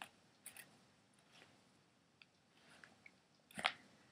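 Faint clicks and scrapes from a Planet Eclipse Etha paintball marker as a part is twisted back into the rear of its body by hand, with one sharper click about three and a half seconds in.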